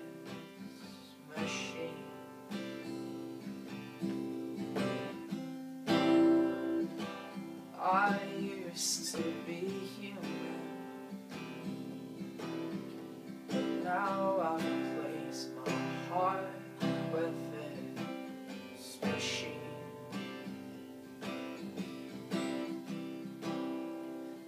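Acoustic guitar strummed in a steady chord pattern: an instrumental break in the song, with no lyrics sung.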